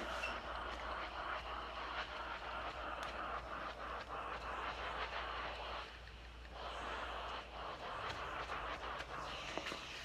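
Steam iron hissing steadily as it is passed over a crochet sweater on a towel to steam-block it, with a short lull about six seconds in and faint rustles of the iron moving on the fabric.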